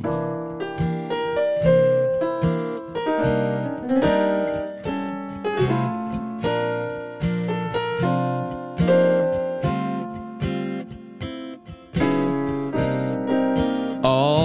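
Acoustic guitar playing the instrumental introduction to a slow blues song, a run of plucked notes and chords, each ringing and dying away.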